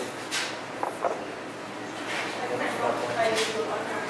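Indistinct voices and chatter over the steady background noise of a busy restaurant room.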